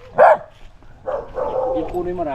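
A dog barks once, a single short bark just after the start.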